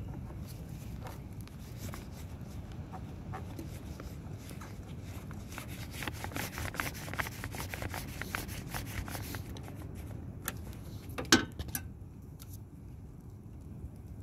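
Small metallic clicks and scrapes of pliers working a spring hose clamp off a rubber fuel line, busiest midway, with one sharp clink about eleven seconds in, over a steady low rumble of wind on the microphone.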